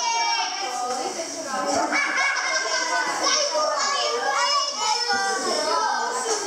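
Many children's voices calling and shouting over one another without pause, high-pitched and excited, during a game.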